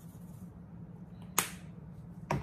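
A single sharp click about one and a half seconds in as a seasoning container is handled, over a faint steady low hum.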